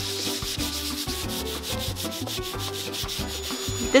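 Hand sanding with 220-grit sandpaper on the bare wood inside a cabinet: repeated scratchy back-and-forth rubbing strokes.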